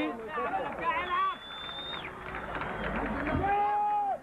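Stadium crowd noise at a football match. A long, steady, high whistle sounds about a second in and lasts about a second, and a held pitched call or horn comes near the end.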